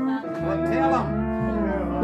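Live band playing long held notes over steady bass notes, with one note bending downward about a second in.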